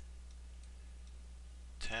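Faint computer mouse clicks over a steady low electrical hum, while digits are drawn with a paint program's pencil tool. A man says "ten" near the end.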